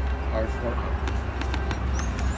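A man says a brief word over a steady low rumble.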